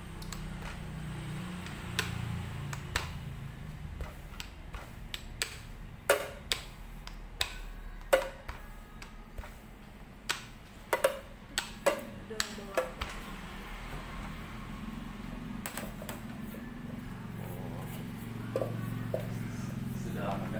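Sharp knocks and clicks on a stainless-steel worktable, clustered in the middle, as bread dough is worked with a rolling pin and rolled up by hand. A steady low hum runs underneath.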